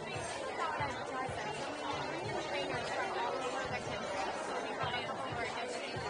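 Chatter of many diners talking at once in a busy, full restaurant dining room, a steady babble of overlapping voices.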